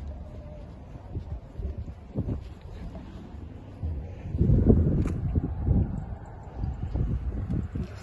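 Wind buffeting a handheld phone's microphone: an irregular low rumble that swells loudest from about four to six seconds in, with a single sharp click near the five-second mark.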